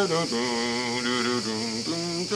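A man singing a musical line without words, holding notes that step up and down in pitch, to imitate an instrument part. A steady, high insect chirring runs underneath.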